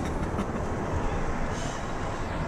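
Steady road and engine rumble heard inside the cabin of a moving car.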